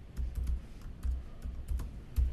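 Typing on a computer keyboard: an irregular run of key clicks, each with a dull thump.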